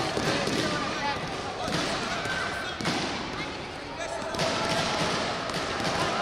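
Sound of a taekwondo sparring bout in a sports hall: voices shouting at intervals over repeated thuds and slaps of bare feet stepping and kicking on the mat, all echoing in the hall.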